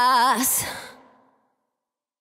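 A singer's voice holding the last note of a song alone, with a wavering vibrato, then ending in a breathy sigh. The sound fades to silence about a second in.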